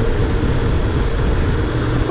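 2018 Honda Gold Wing DCT Tour's flat-six engine running steadily while riding downhill at an easy pace, mixed with steady wind and road noise.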